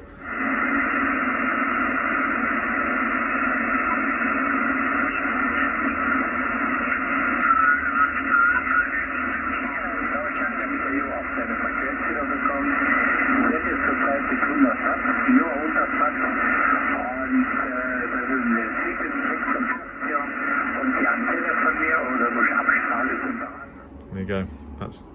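Amateur radio voice traffic on the 40-metre band from the loudspeaker of an Icom IC-756 HF transceiver: thin, narrow-sounding single-sideband speech with background noise. It cuts off sharply just before the end.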